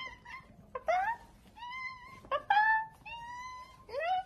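Long-haired domestic cats meowing repeatedly: about six meows, mostly short and rising in pitch, with one longer held meow near the end.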